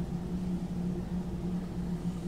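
A steady low hum on one unchanging pitch, with faint room noise beneath it.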